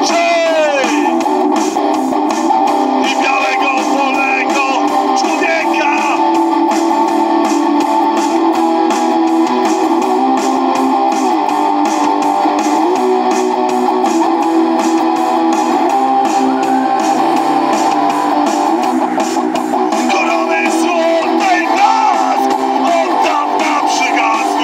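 A live electric guitar is strummed and played steadily through outdoor PA speakers, with a man's singing voice coming in near the start and again near the end.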